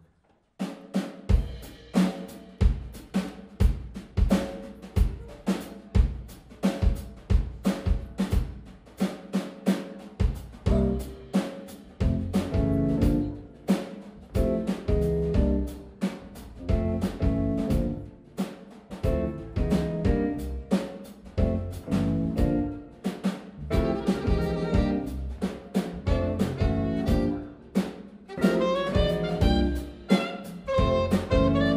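A live jazz band plays an instrumental song intro. The drum kit keeps a steady beat from about half a second in, a bass line fills in the low end from about ten seconds in, and a saxophone melody comes in near the end.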